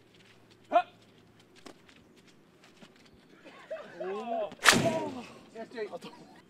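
A group of men shouting and groaning in reaction to a missed American-football throw, with one loud, sharp crack among the voices a little over halfway through. There is also a brief yelp about a second in.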